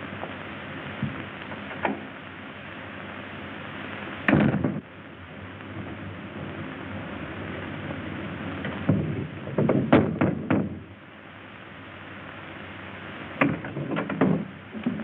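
Steady hiss of an old film soundtrack, broken by one heavy thud about four seconds in and a quick cluster of knocks and thuds around ten seconds in.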